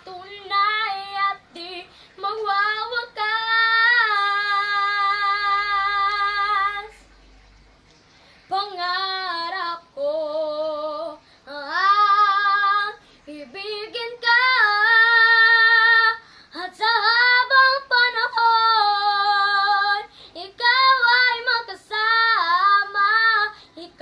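A young girl singing a Tagalog love ballad unaccompanied, in phrases with long held notes and short breaths between them, and a brief pause about eight seconds in.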